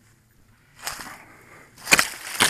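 Banana leaves and dry plant litter rustling and crackling as someone brushes through the plants: a rustle about a second in and a sharper, louder crackle near the end.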